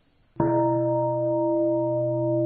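A large bowl-shaped temple bell struck once about half a second in, then ringing on steadily with a deep hum under several higher tones.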